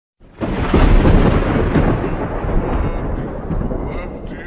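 Thunder sound effect: a crack and a rolling rumble that starts a moment in, is loudest in the first second and slowly dies away.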